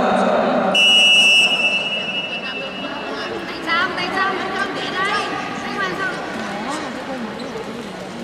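A referee's whistle: one short, steady blast about a second in, signalling the start of a wrestling bout. Voices in the hall and a few short rising squeaks follow.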